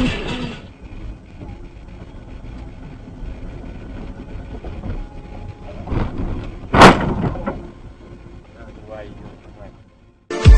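Car cabin and road noise while driving on a snowy road, broken about seven seconds in by a single loud crash as the car hits the back of a truck ahead, with a smaller knock just before it.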